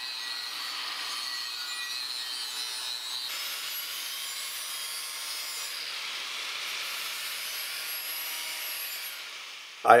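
Angle grinder with a fresh flap disc sanding the paint off a steel wheel's rim, a steady grinding whine whose tone shifts about three seconds in. It stops just before the end.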